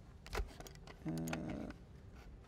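A man's single drawn-out hesitation 'uh' at a steady pitch, a second in. Before it there is a soft thump with a click, and a few faint clicks follow from handling things on the desk.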